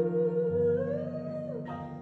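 A woman's voice holding a sung note that slides up and falls back down, over sustained keyboard chords, in a live vocal-and-keyboard performance.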